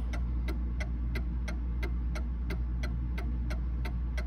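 Mantel clock movement's recoil escapement ticking quickly and evenly, about three ticks a second: the clock is running close to in beat.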